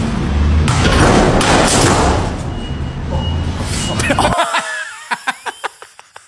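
Loud rushing noise with a low rumble from a phone-filmed video clip, cutting off suddenly about four seconds in; after it, people laughing in short bursts.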